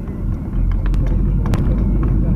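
Car cabin noise while driving: a steady low rumble of engine and road, with a sharp click about one and a half seconds in.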